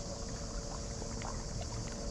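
Small sea waves lapping and splashing gently against a stone quay, over a steady high-pitched hiss.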